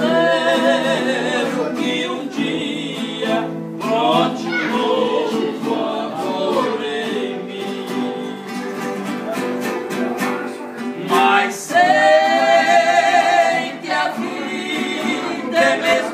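Two men singing a sertanejo song to their own strummed acoustic guitars. The voices hold long notes with vibrato at the start and again for a couple of seconds late in the passage, with the strumming going on steadily underneath.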